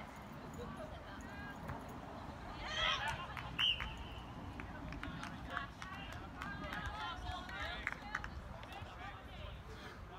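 Distant voices calling and shouting across a rugby pitch during play, with a brief, loud, high call a little before four seconds in.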